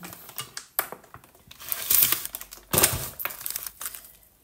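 Plastic food packaging crinkling and rustling as it is handled, in several irregular bursts, the loudest about two and three seconds in.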